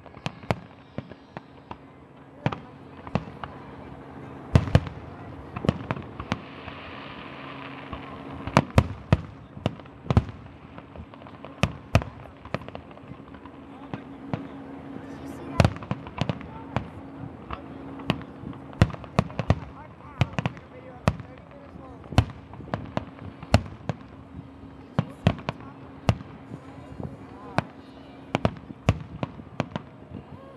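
Aerial firework shells bursting, a rapid irregular string of sharp bangs, some coming in tight clusters, over a steady low hum.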